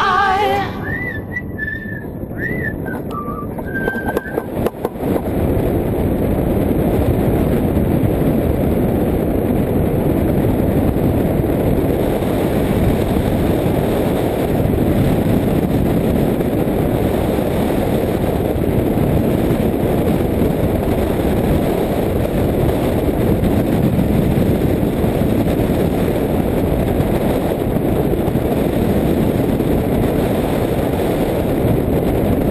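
Steady wind noise from air rushing over the microphone of a camera fixed to a hang glider in flight, fairly loud and heaviest in the lows, settling in about five seconds in. Before that, a few short high whistle-like tones that bend in pitch.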